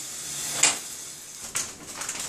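Faint household handling noises: a short burst of noise about half a second in, then a few soft clicks and knocks.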